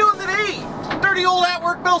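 Mostly a man speaking, over the steady low engine and road noise of a van being driven, heard from inside the cab.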